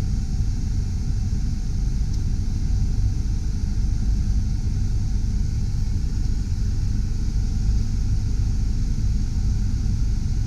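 1997 Honda Del Sol idling while parked, heard from inside the cabin, with the heater blower fan pushing hot air out of the dash vents: a steady low rumble under an even hiss of air.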